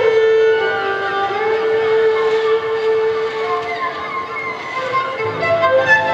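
Solo violin holding long sustained notes with some sliding pitches, growing softer in the middle, then quicker notes resuming near the end.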